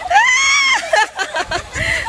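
A woman's long, high-pitched shriek, rising then falling, followed by shorter cries as players tumble onto the grass.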